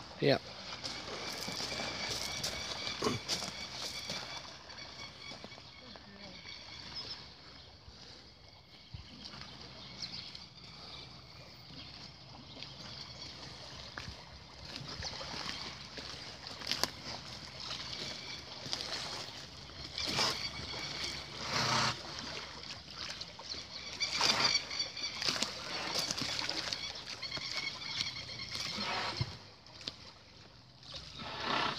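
Water sloshing and splashing as a horse swims through a pool, its legs churning the water, with louder splashes now and then, several in the second half.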